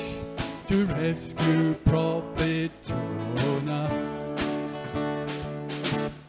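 Live country-style band music: strummed acoustic guitar with fiddle and drums, playing through a change between verses of a song.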